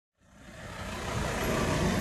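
Road traffic: cars driving past on a street, engine and tyre noise swelling up from silence over the first second and a half and then holding steady.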